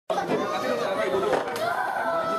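Several people talking over one another at once, overlapping voices in a small room.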